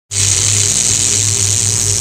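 A steady electric buzz with a loud static hiss over it, a glitch sound effect for the video's intro. It starts suddenly and cuts off at the end.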